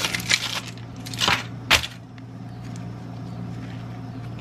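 Aluminium foil crinkling as a foil-wrapped tortilla is unwrapped, in a few bursts over the first two seconds, the last one sharp. After that only a low steady hum is left.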